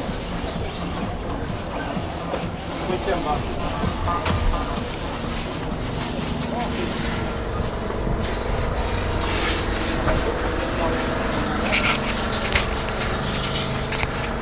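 Steady drone of model-car engines with background voices around the track, and a few sharp footstep clicks on metal stair treads about eight to ten seconds in.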